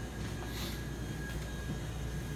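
Steady low machinery hum with a faint, steady high-pitched whine: background equipment running.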